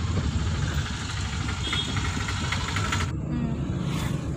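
Steady road and engine noise inside a moving car's cabin: a low rumble with a hiss over it. The hiss cuts off sharply about three seconds in, leaving only the rumble.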